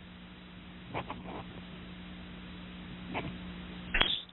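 Two short calls from an animal, about two seconds apart, over a steady low hum and hiss on a telephone line.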